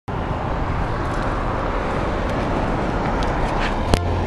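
Steady road traffic noise from cars on the street, a continuous rumble and hiss, with a single sharp click near the end.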